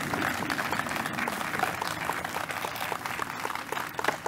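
Audience applauding, many hands clapping steadily.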